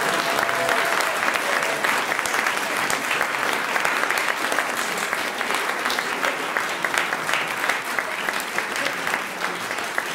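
Audience applauding steadily, many hands clapping together, after a choir piece has ended.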